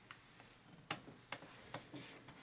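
A series of short, sharp clicks, about two a second, the loudest about a second in.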